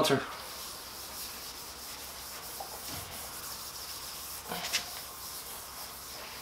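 A red pad rubbing paste wax steadily across a metal jointer table. A brief louder noise comes once, about three-quarters of the way through.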